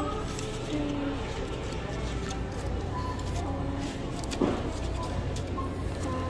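Supermarket background noise: a steady low hum with faint distant voices, and one short knock about four and a half seconds in.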